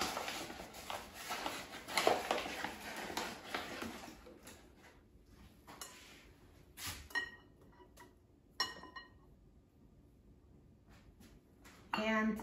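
Paper flour bag rustling as a measuring cup scoops flour. Then a quieter stretch with two sharp knocks that ring briefly, about seven and nine seconds in: the cup tapping against the glass mixing bowl.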